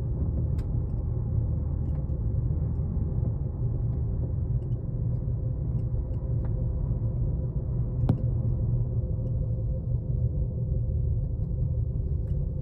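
Steady low rumble inside a moving Banff Gondola cabin as it rides along the cable, with a faint steady hum and a few light clicks, the sharpest about eight seconds in.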